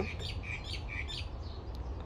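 Several short, high bird chirps in the first second or so, over a low steady hum.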